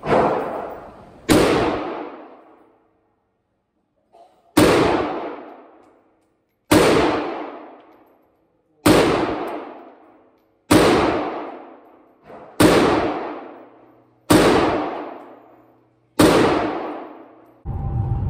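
Micro Draco AK-pattern pistol (7.62×39mm) fired nine times, slow single shots about two seconds apart. Each sharp report is followed by a long ringing decay off the walls of an indoor range.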